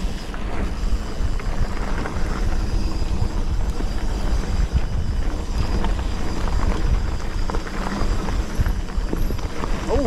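Wind buffeting the microphone of a handlebar-mounted camera on a moving mountain bike, a steady, heavy rumble, mixed with the tyres running over a dirt trail and the bike rattling over the bumps.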